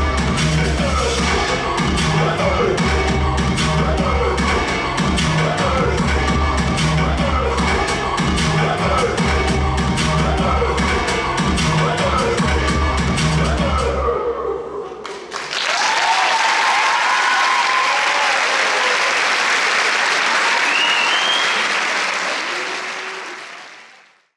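Dance music with a heavy, steady beat plays until it stops about fourteen seconds in. Then the audience applauds, with some cheering, and the sound fades out near the end.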